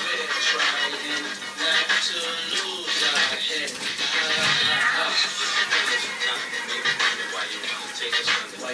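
Recorded music playing continuously, with a voice in it.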